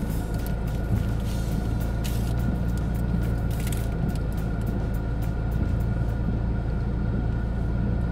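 2017 McLaren 570GT's twin-turbo V8 idling steadily, heard from inside the cabin. Light crinkles from a paper pastry wrapper sound over it.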